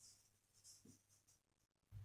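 Faint strokes of a marker writing on a whiteboard, heard as soft high scratches.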